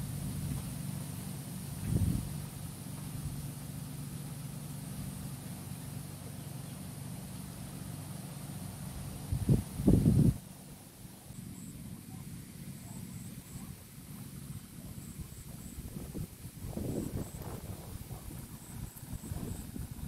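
A steady low engine hum, with a thump and then a louder low burst about ten seconds in. After that the hum is gone, leaving irregular low rumbles and faint high chirps.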